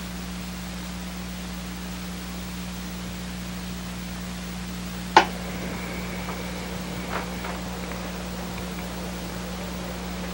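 Steady hiss with a low hum underneath: background noise of an old broadcast recording. One short sharp click about five seconds in.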